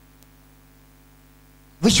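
Steady electrical mains hum from the microphone and amplification chain, with no other sound. A man's voice starts again through the microphone near the end.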